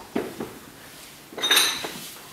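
Two soft knocks, then a bright clink of small hard objects, glass or metal, with a short high ring about one and a half seconds in.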